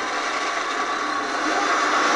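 A loud, steady rushing noise from a film trailer's soundtrack, swelling slightly near the end.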